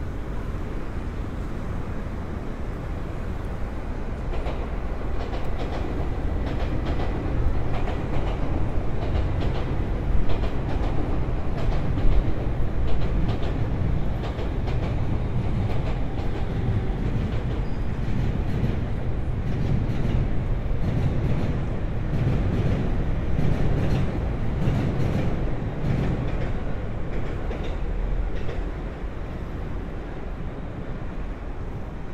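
JR Chuo-Sobu Line local train passing on an elevated railway viaduct. Its rumble swells after a few seconds, the wheels clatter over the rail joints through the middle, and it eases off near the end.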